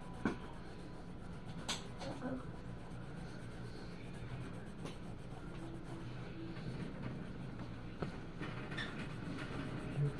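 Red colored pencil scratching on paper as it shades, with a few sharp ticks. A steady low hum runs underneath.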